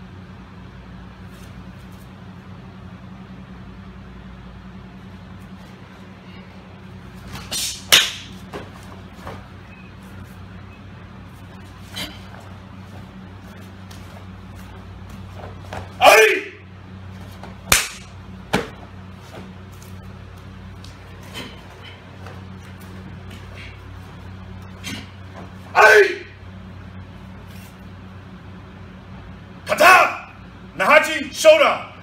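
Solo karate kata (Naihanchi shodan) performed on gym mats: sharp snaps and cracks of the cotton gi and body as techniques are thrown, with two loud short shouts (kiai) about ten seconds apart. A steady low hum runs underneath.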